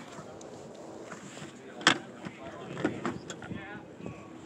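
A sharp click about two seconds in, with a few smaller ticks, from a golf cart being boarded and made ready to drive. Faint voices sit in the background.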